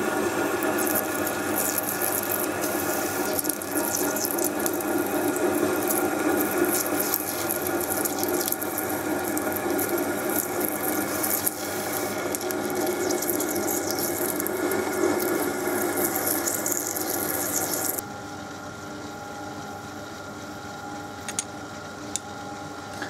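Myford ML7 lathe parting off an aluminium bar with a high-speed steel parting blade: a steady cutting hiss and chatter over the lathe's running hum. About eighteen seconds in the cutting stops, and only the lathe running is left, quieter.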